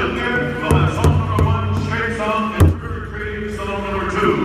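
Voices and music in a large hall, with one loud sharp knock about two and a half seconds in: a stick striking the big hide powwow drum.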